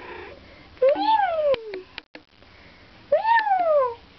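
Domestic cat meowing twice: each is a drawn-out call about a second long that rises and then falls in pitch. A few sharp clicks come between the two calls.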